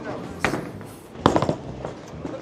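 A bowling ball released onto a wooden lane during a bowler's approach, with a sharp knock about half a second in and a louder thud about a second and a quarter in, over the steady din of a bowling alley.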